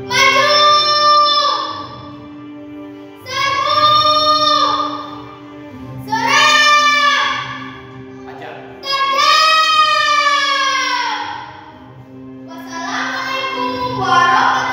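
A girl's voice declaiming a poem in long, drawn-out, sung-like phrases, about five of them with short pauses between. Soft background music with held chords plays underneath.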